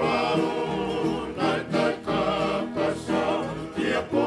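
A Tongan kalapu group singing a song in harmony, several voices together with a wavering high voice on top.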